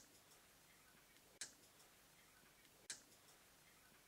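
Near silence in a pause of a voice recording, broken twice by a faint short click, about a second and a half apart.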